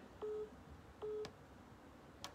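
Two short, steady telephone beeps on the phone line, a bit under a second apart.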